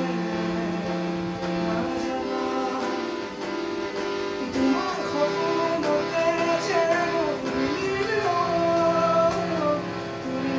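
Hand harmonium sustaining steady reed chords while a man sings an Assamese song over it, his voice gliding between notes.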